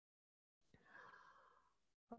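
Near silence, with a faint breath about a second in.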